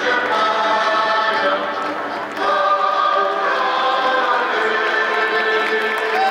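Choral singing filling the stadium, long held notes that change every second or two, briefly dipping about two seconds in before picking up again.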